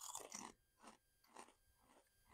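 Faint crunching of kettle-cooked potato chips being chewed: a cluster of soft crackles in the first half second, then a few scattered ones.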